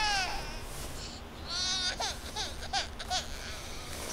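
A baby crying in short, wavering wails and whimpers. One cry trails off at the start and another comes about a second and a half in, followed by a few small whimpers.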